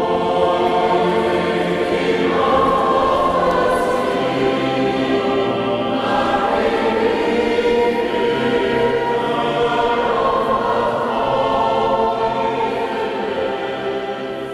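A mixed choir of men and women sings a hymn in held, sustained notes.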